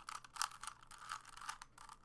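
A 3x3 Rubik's cube being turned quickly by hand: the plastic layers click and scrape in a fast, irregular run of turns as a middle-layer edge piece is worked into place.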